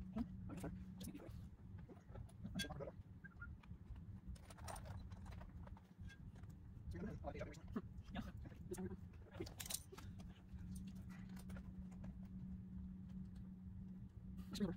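Small scattered metal clicks and clinks of a 4 mm Allen key and a 19 mm wrench working an M6 button-head screw and nylon clip on a mud flap, with handling knocks of the flap, over a faint steady hum.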